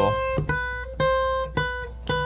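Acoustic guitar playing single picked notes, about two a second, each ringing and fading before the next. The notes sit close together in pitch, as a chromatic fingering exercise steps through neighbouring frets.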